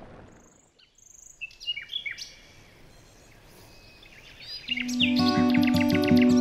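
Birds chirping in short, quick calls, then about four and a half seconds in, music of plucked notes fades in and becomes the loudest sound.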